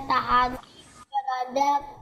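A student's voice reading aloud in Indonesian, with a short pause about halfway through.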